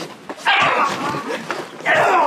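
A man crying out in a scuffle: one long strained cry about half a second in, and another beginning near the end.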